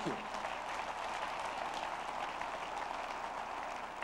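Audience applauding: a steady wash of clapping from a large crowd that tapers off slightly near the end.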